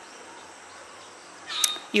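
Faint outdoor background hiss, with one short, sharp high-pitched sound about one and a half seconds in.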